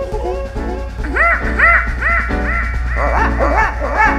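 Live reggae band playing, with steady bass and drums, while the singer delivers a quick run of short rising-and-falling vocal yelps, about two a second, starting about a second in.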